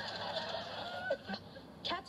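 Sitcom studio-audience laughter that dies away about halfway through, followed by a few short high vocal squeaks and a quick rising cry near the end.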